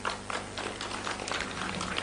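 Pause in amplified speech: faint background noise with a steady low hum and light scattered crackling.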